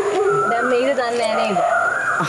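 Speech: people talking.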